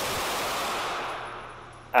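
A single pistol shot in an indoor range: a sharp crack right at the start, then a hiss of echo and noise that holds for about a second and fades away.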